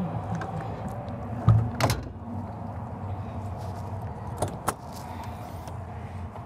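A slide-out storage tray with a portable fridge on it pushed back into an RV basement bay, closing with a thump and a sharp click about two seconds in. Two lighter latch clicks follow as a compartment door is unlatched, over a steady low hum.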